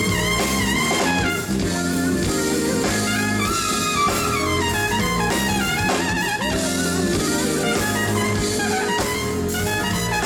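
Live jazz-funk band with a trumpet playing a solo line over electric bass and a drum kit.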